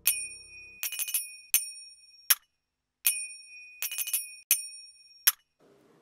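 A small, high-pitched metal bell rung in a quick run of strikes, each left ringing briefly; the same run of rings comes again about three seconds in.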